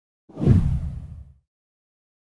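A single whoosh sound effect with a deep rumble under a hiss, swelling in quickly and fading away over about a second: an intro transition effect.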